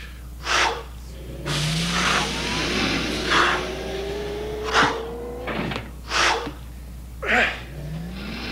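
A man's forceful breaths and grunts of effort as he works out, coming in a steady rhythm about once every one and a half seconds. Through the middle, a whirring sound runs underneath and rises slowly in pitch.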